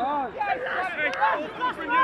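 Several men's voices shouting and calling over one another in the open air, short rising-and-falling calls overlapping, with a couple of brief sharp clicks.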